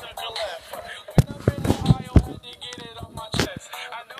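A hip hop song with rapped vocals playing back. Several sharp, loud thumps cut through it, about a second in and near three and a half seconds.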